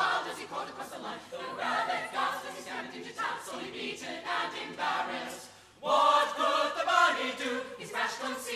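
Mixed-voice a cappella group singing in harmony in short phrases. The voices drop out briefly about two-thirds of the way through, then come back in loudly.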